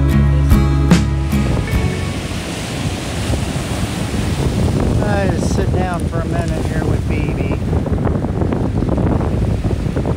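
Slide-guitar background music ends about a second and a half in and gives way to wind buffeting the microphone over ocean surf breaking on a cobble beach. A few short calls that rise and fall in pitch sound around the middle.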